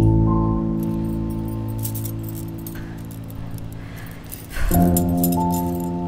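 Film score: a low, sustained chord that slowly fades, then a second chord struck about three quarters of the way through. Faint small metallic clinks are scattered underneath.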